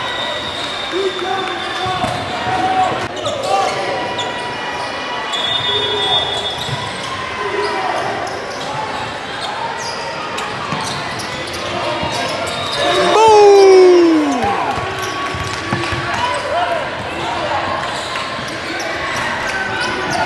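Live gym sound of a youth basketball game: a basketball bouncing on the hardwood court, with players and spectators calling out in a large echoing hall. About two-thirds of the way through comes the loudest sound, one long shout that falls in pitch.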